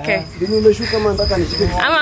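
A cricket chirping in a high, pulsed trill under low talking voices, with a burst of laughter near the end.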